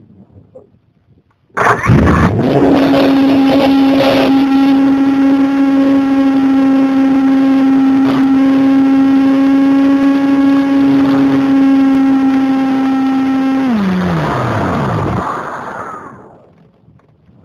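Electric motor and propeller of an RC motor glider, heard from on board. The motor starts abruptly about a second and a half in and spins up quickly, holds one steady high whine for about eleven seconds, then is cut near the end and winds down with falling pitch.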